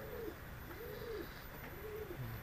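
A dove cooing in the background: a steady series of low, soft coo notes, each rising and falling in pitch, about three in two seconds.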